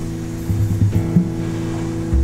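Guitar music: a held chord ringing on, with a few short low notes picked beneath it from about half a second in.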